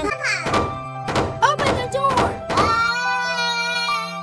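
A child's voice crying and sobbing in sliding, wavering cries over light background music, with a few short thunks.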